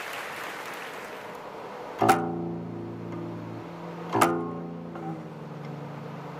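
Guqin (seven-string zither) played solo: applause fades out, then about two seconds in a plucked note rings out and sustains, followed about two seconds later by a second plucked note whose pitch slides downward as it rings.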